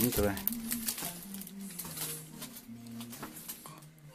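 A plastic bag crinkling in a hand, a run of light crackles that fades out, over faint background music.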